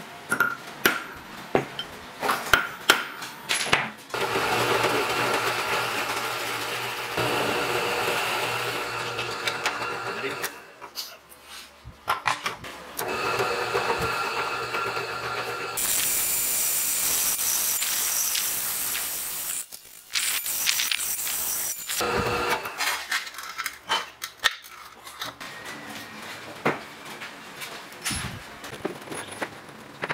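A run of sharp hammer blows on a thick steel disc, marking its centre, then a bench drill press running and boring through the steel plate in several stretches with short stops between. Light metal taps and clinks of parts being handled near the end.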